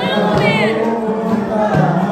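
Live group singing led by a man's voice amplified through a microphone, with an acoustic guitar and several voices joining in. About half a second in, a high voice slides down in pitch in a short cry.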